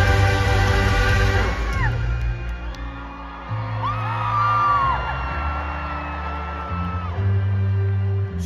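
Rock band playing live in an arena, heard from the crowd: the full band thins out about two seconds in to held bass notes and long high sustained tones, with shrill voices from the audience rising and falling over it.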